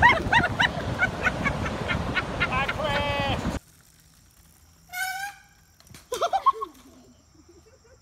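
Laughter and excited yelling over wind noise on the microphone. After an abrupt cut to near quiet, there is a single high-pitched shout about five seconds in and a few short cries a second later.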